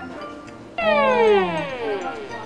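A sound effect starts suddenly about a second in and glides steadily down in pitch for about a second, over background music.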